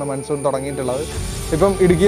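A man speaking to camera in Malayalam, with a low rumble coming in about a second in.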